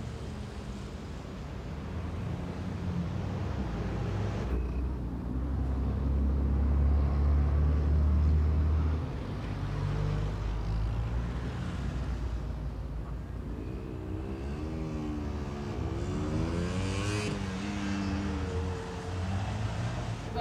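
Road traffic: cars and other vehicles driving past, with a heavy low engine rumble that swells a few seconds in. In the second half one vehicle's engine note rises and falls several times as it pulls away.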